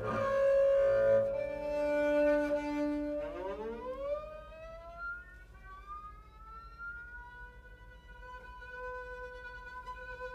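Acoustic double bass bowed arco: held notes, then about three seconds in a slow upward slide in pitch that settles into a high sustained tone, growing quieter.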